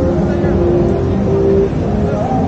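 Busy city street ambience: many voices talking in a crowd over the steady hum of traffic, with a steady held tone from about half a second in until shortly before the end.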